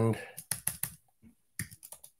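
Typing on a computer keyboard: two quick runs of keystrokes, the first about half a second in and the second near the end, as a terminal command is typed.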